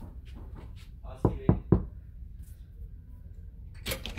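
Three quick knocks on a cabin door, evenly spaced a little over a second in, then a single sharp click near the end.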